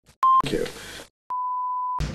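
Electronic test-tone beeps at one steady pitch. A short beep comes with a burst of noise about a quarter second in, and a longer steady beep follows after a brief silence.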